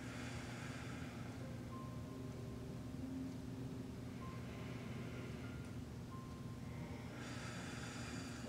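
Slow, deep breathing, heard as three long soft breaths in turn, over a steady low hum.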